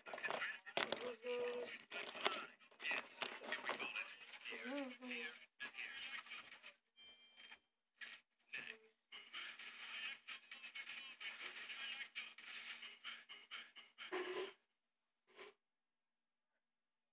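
Faint speech in short, broken stretches with brief gaps, stopping about a second and a half before the end.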